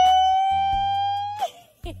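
A woman's voice holding one long, high sung "oh" for about a second and a half, its pitch creeping slightly upward before it cuts off, in celebration of arriving. A short shouted "howdy" follows near the end.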